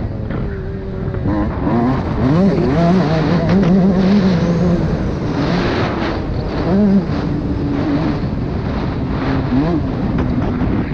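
Suzuki RM 125 two-stroke motocross bike engine, heard from the rider's helmet, running hard on a dirt track. Its pitch climbs and drops several times as the bike accelerates and shifts gear, with sharp rises about two and a half seconds in, near seven seconds, and near the end.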